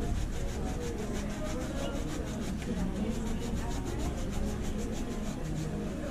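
Quick, even back-and-forth scrubbing on the upper of a white leather Adidas sneaker, done by hand during a sneaker cleaning.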